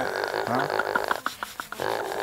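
A pig giving a quick run of short, clicking grunts as it lies being rubbed, about a second in, after a brief vocal 'hein'.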